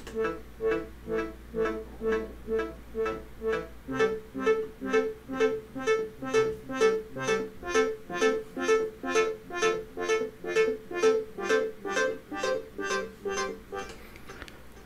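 Serum software synth playing a simple sawtooth patch through a MacBook Pro's speakers: a repeating pattern of short pitched notes, about two a second, growing busier about four seconds in.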